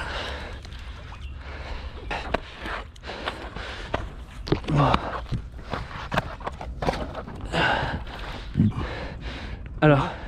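Short grunts and breaths of effort from people heaving, with scattered scuffs and knocks of handling, over a low steady rumble.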